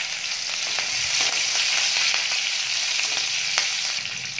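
Chopped green chillies and cumin seeds sizzling in hot oil in an aluminium kadai, a steady frying hiss that swells slightly about half a second in, with occasional small crackles and ticks.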